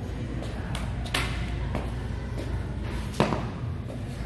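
Knocks from things being handled close to the camera: a sharp knock about a second in and a louder one near the end, with a few fainter taps, over a steady low hum.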